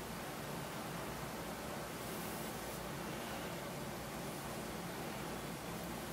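Steady low hiss of room tone, with no distinct clicks or knocks.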